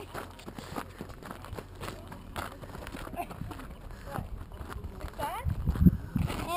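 Footsteps on a gravel path, a quick, uneven run of thuds that grows loudest near the end, with voices of people talking nearby.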